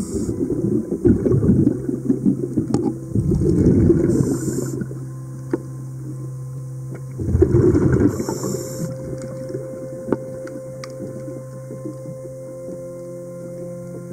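Scuba diver breathing underwater: a rumble of exhaled bubbles from the regulator in spells of about a second, each followed by a short hiss as the diver inhales, with a long pause in the second half. A steady faint hum runs underneath.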